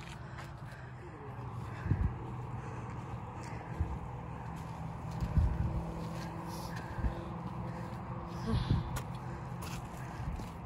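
Footsteps scuffing over sandstone and dirt on a hiking trail, with a few low thuds about two, five and nine seconds in, over a steady low hum.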